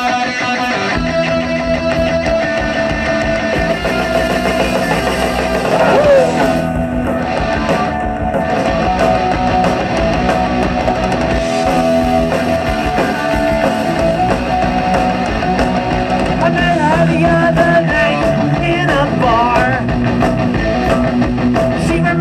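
Live punk rock band playing the opening of a song: guitar playing alone at first, with the full band coming in about a second in.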